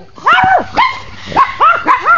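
French Bulldog giving a run of about five short, high-pitched calls, each rising and then falling in pitch, while he plays with a plastic bowl.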